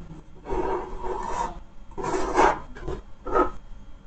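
A few rasping, rubbing bursts as hands handle the airbag module's circuit board and its wiring on the bench.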